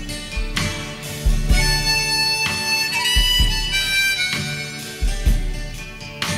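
Harmonica playing a phrase of held notes in an instrumental break of a country-rock song, with guitar and a low beat underneath.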